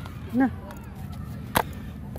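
A brief voiced sound under half a second in, then a single sharp click about a second and a half in, over a low outdoor background.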